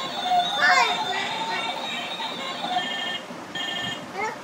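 A young child's voice sounds briefly about half a second in. Near the end come two short electronic tones from a red toy telephone, each about half a second long, as its keypad is pressed.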